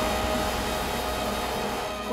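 A steady mechanical drone with a hiss and a hum of several steady tones, easing slightly near the end.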